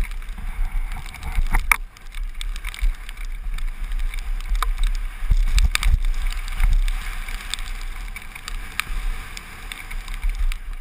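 Wind buffeting a helmet camera's microphone on a fast downhill mountain-bike run over a dirt trail, a steady low rumble with tyre noise from the dirt. Several sharp knocks and clatters from the bike going over bumps, one of the loudest a little under two seconds in.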